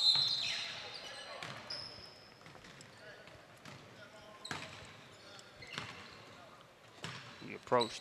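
Live basketball play in a gym: a basketball bouncing on the hardwood floor, heard as a few separate thumps over the hall's background noise, with a few short high squeaks.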